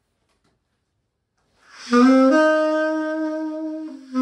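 Conn 6M alto saxophone entering after a near-silent start, about two seconds in: it sounds one note, steps up to a higher note and holds it steadily for about a second and a half.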